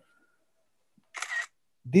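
A pause in narration: about a second of dead silence, as from a voice-call microphone gate, then a short breathy hiss, and a voice starting to speak near the end.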